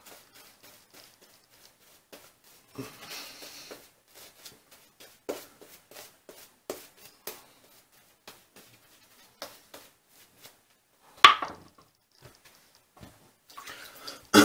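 Shaving brush working lather onto the face and neck: soft, scattered brushing swishes and small clicks, with one sharper click about eleven seconds in.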